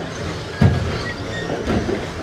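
Radio-controlled stock trucks racing on an indoor carpet track: a steady mechanical rumble of motors and tyres, with one loud thump a little over half a second in.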